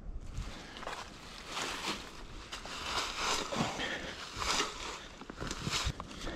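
Footsteps crunching through dry fallen leaves: an uneven run of crunches and rustles.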